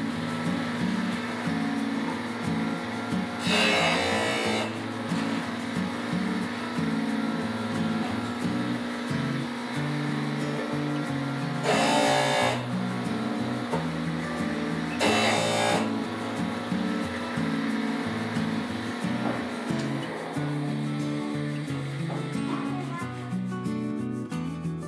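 Background music with a steady run of low notes, broken three times by short bursts of rasping hiss, about a second each, from wood being pressed against a running bench disc sander.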